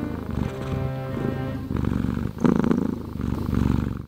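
A cat purring steadily over background music.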